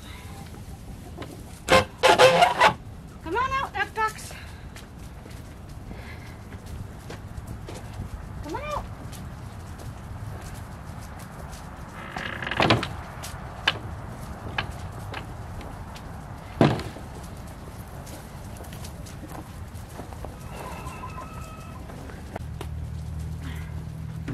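Chickens calling in a backyard run: a loud squawking call about two seconds in, followed by shorter calls with rising and falling pitch, another loud call about halfway through, and softer clucks near the end.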